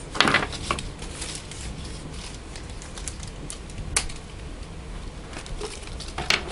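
A fruit roll-up wrapper being ripped in half: a short tearing rasp near the start, then quieter crinkling and a few sharp clicks as the pieces are handled.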